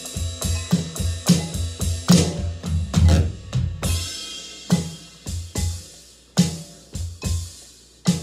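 Electronic drum kit played with sticks: a busy groove of bass-drum and snare strokes for about the first four seconds, then thinning to sparser single hits.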